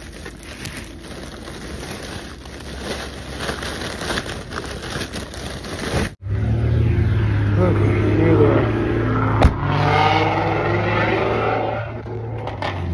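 Foil balloons crinkling and rustling against a phone, heard as dense irregular crackling. About halfway through the sound cuts off abruptly, and a louder steady low car-engine hum follows, with other wavering sounds over it.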